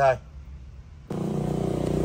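A steady engine hum with background traffic noise, starting abruptly about a second in, after a short spoken word.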